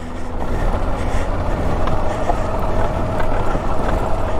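2012 Suzuki V-Strom DL650's 645 cc V-twin engine running steadily at low trail speed.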